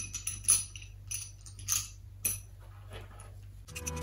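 Small seashells clinking as they are dropped into a glass jar, about five light clinks over the first two and a half seconds. Background music comes in near the end.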